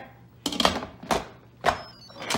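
Instant Pot lid being set on the pot and twisted shut: three short clunks of the lid against the rim, about half a second apart, with a faint high tone starting near the end as the lid locks and the cooker chimes.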